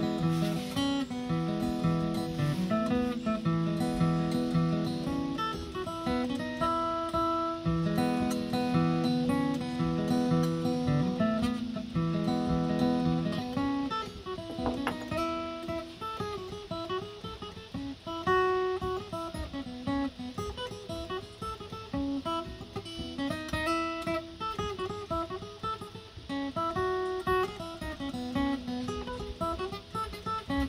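Fiddle and acoustic guitar playing a jig together, the fiddle carrying the melody over the guitar's accompaniment. About halfway through the lower notes drop away and the tune moves to a higher part.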